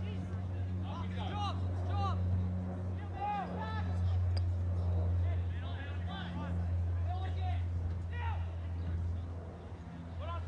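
Scattered shouts and calls from players and onlookers at a soccer match, over a steady low hum.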